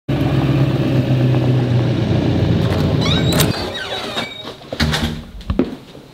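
Pickup truck engine running as the truck drives past, loud for the first three and a half seconds and then dropping away, with brief high squeaks around three seconds in. A few sharp clicks and knocks follow near the end.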